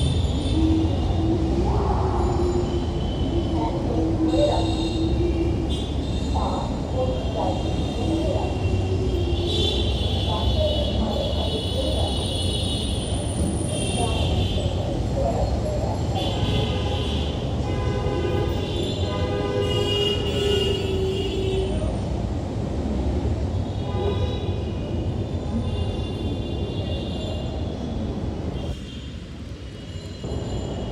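Busy city road traffic: a steady engine and tyre rumble with frequent vehicle horns honking over it. The rumble drops a little about a second before the end.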